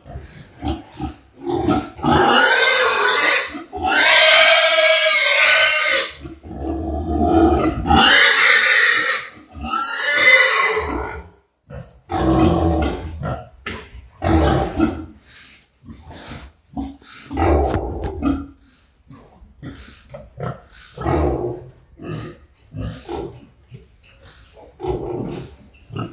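A sow squealing while workers hold her down for artificial insemination: several long, loud, shrill screams in the first half, then shorter squeals and grunts every second or two.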